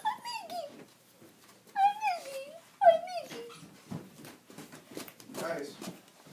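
Three high-pitched whimpering cries in the first three and a half seconds, each sliding down in pitch, followed by softer murmuring.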